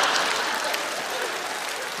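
Audience applauding, the clapping slowly fading.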